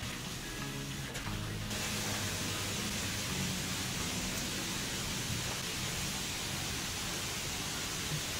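Steady hiss of a hand-pump garden sprayer misting primer onto a wall, getting stronger about two seconds in, over soft background music.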